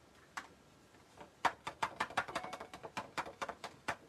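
A card and a clear plastic tub being handled while excess white embossing powder is tapped off. There is one light click, then a quick run of sharp plastic taps and clicks, about six a second, that stops near the end.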